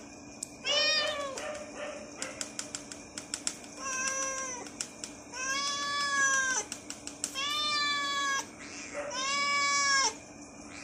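Domestic cat meowing over and over: five long meows, each rising and then falling in pitch, with runs of short quick clicks in the gaps between them.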